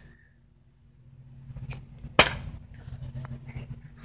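A thrown knife striking the wooden throwing target block once with a single sharp knock about halfway through, after faint rustling.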